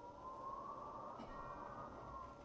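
Brass band playing softly: a quiet sustained chord with a held upper note that swells slightly.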